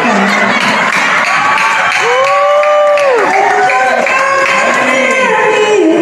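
A singer's voice through a microphone and PA, holding long sustained notes with one long held note a couple of seconds in, while a crowd cheers and shouts.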